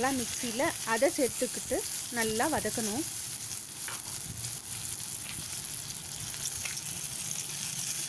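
Chopped shallots and curry leaves sizzling in hot oil in a stainless steel pan, with ground tomato purée just added: a steady frying hiss, heard alone after the first few seconds.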